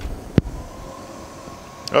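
A sharp click, then the Growatt SPF5000ES inverter's cooling fans kicking on under a heavy load, a steady whir with a faint whine.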